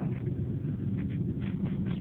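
Road noise inside a moving car's cabin: a steady low rumble of the engine and tyres on the road.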